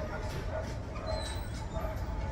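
A dog vocalizing, over a steady low rumble.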